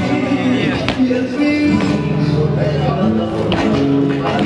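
Flamenco guajira music, guitar and singing, with sharp accents about a second in and again near the end.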